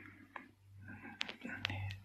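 Faint, muffled speech too quiet to make out, from a participant whose microphone is barely coming through, over a steady low electrical hum with a few soft clicks.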